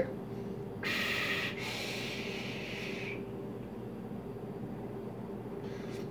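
A long pull on a squonk vape mod with a rebuildable dripping atomizer: a hissing draw of air through the atomizer lasting about two seconds, starting about a second in, then a faint breath out of the vapour cloud near the end. A steady low hum runs underneath.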